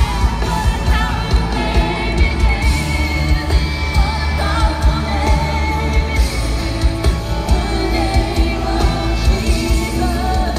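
Live pop-style worship song played loud through stadium speakers: a lead singer over a band with heavy bass and a steady beat.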